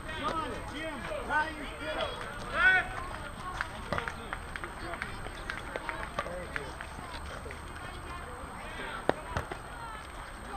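Indistinct voices of softball players calling out, most of it in the first three seconds, with a few sharp knocks later, the loudest one near the end.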